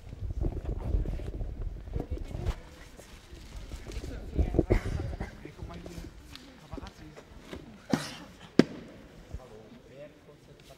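Indistinct voices and bustle of players gathering at the team bench in a sports hall, with irregular thuds and footsteps. Two sharp knocks come less than a second apart near the end.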